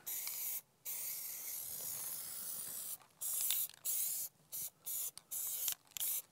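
Aerosol spray can hissing as a coating is sprayed onto a plastic mallard decoy: a short burst, a long spray of about two seconds, then five short bursts.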